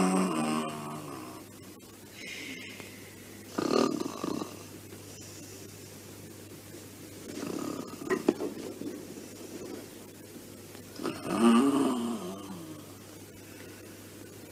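A person snoring: four loud, throaty snores spaced about four seconds apart, the first and the last the loudest.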